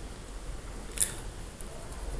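A single short click about halfway through, over a faint steady low hum and room noise.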